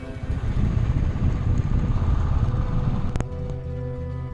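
Low rumble of a motorcycle engine running, cut off by a click about three seconds in, after which music with steady held tones plays.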